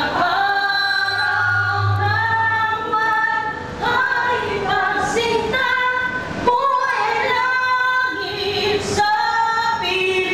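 A group of people singing an anthem together, women's voices most prominent, in slow held notes.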